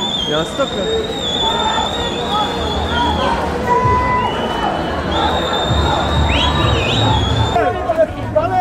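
Whistles blown in long, steady, high blasts over crowd chatter: one held for about three seconds, then others at slightly different pitches, with a brief sliding note before they stop shortly before the end.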